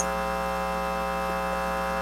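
Steady electrical mains hum on the audio feed: an unchanging drone with many evenly spaced overtones and no other sound.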